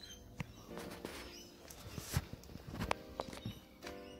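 A honeybee buzzing close to the microphone in short passes, about a second in and again near the end, its agitated tone the warning of a defensive guard bee. A few sharp clicks come between the passes.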